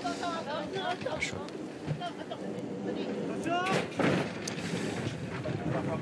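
Voices and calls around the horse-racing starting stalls, then about four seconds in a sudden loud bang as the starting gates spring open for the start.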